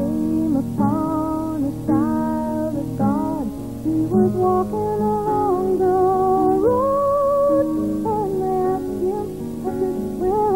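A woman singing a slow song with solo grand piano accompaniment, her voice coming in at the start over the piano and holding long notes that bend in pitch.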